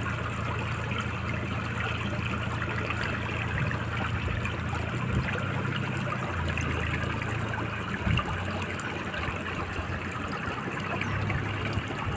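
Floodwater after a cloudburst flowing steadily, a continuous watery hiss with a low, uneven rumble underneath and a brief bump about eight seconds in.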